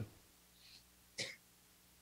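A pause with near silence, broken just over a second in by one brief, short mouth or throat sound from a man, such as a quick breath or throat noise before speaking.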